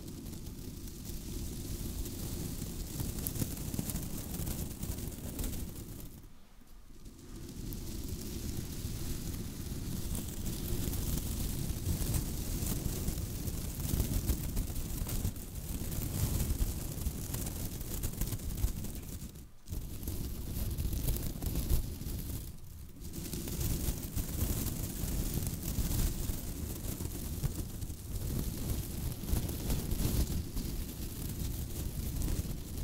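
White tinsel garland wrapped over a microphone, rubbed and squeezed by fingers: a continuous close crackling rustle with a heavy low rumble from handling the mic. It stops briefly three times, about a fifth of the way in and twice around two-thirds through.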